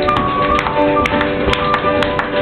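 Tap shoes striking the floor in a quick, uneven run of taps, over a live flute playing held notes and piano accompaniment.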